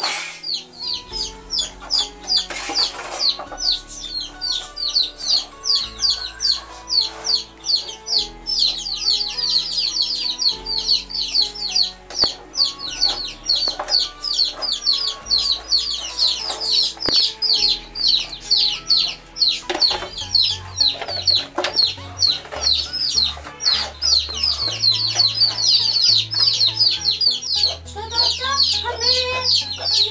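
A brood of young chicks peeping continuously: a fast stream of short, high chirps, each falling in pitch, over background music.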